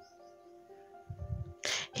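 Quiet background music of soft, held notes. Near the end comes a short breathy noise, just before speech starts again.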